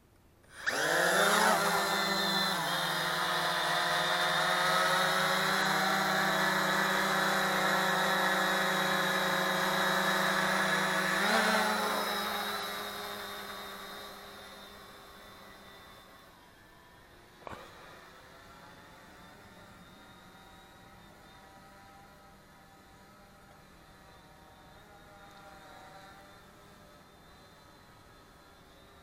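UpAir One quadcopter's motors and propellers spinning up for an automatic takeoff: a rising whine that settles into a steady buzz, steps up in pitch about eleven seconds in, then fades over the next few seconds as the drone climbs away and stays as a faint hum. A single sharp click comes about two-thirds of the way through.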